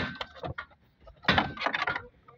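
Clicks and rattling of parts being handled inside a stripped-out pickup dashboard. A sharp click comes at the start, then a few light ticks, then a denser scraping rattle in the last second.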